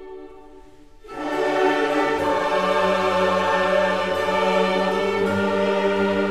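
Baroque orchestra with chorus. A soft held chord gives way about a second in to a loud entry of voices and orchestra, and a low bass line joins about a second later.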